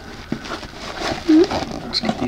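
A cardboard shipping box being opened and its bubble-wrapped packing pulled out: rustling and scraping with a few small clicks. One short, loud pitched sound comes a little past a second in.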